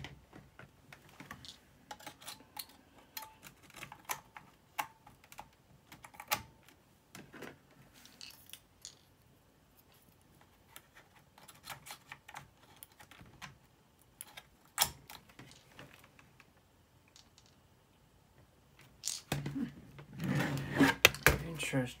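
Scattered light plastic clicks and taps from a Dell Inspiron N5110 laptop being handled on a hard table. From about nineteen seconds in, a dense, louder clatter of knocks and clicks as the laptop is turned over and its lid opened.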